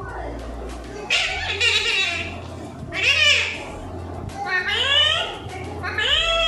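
Alexandrine parakeet calling: a harsh, raspy call about a second in, then two loud arched squawks that rise and fall in pitch, about three and five seconds in.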